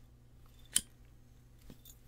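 A cigarette lighter struck once with a sharp click, followed by a fainter click near the end.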